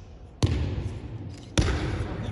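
Two sharp thuds on the mats, about a second apart, as the thrown aikido partner's feet and body strike the floor during the throw. Each thud is followed by a short echo.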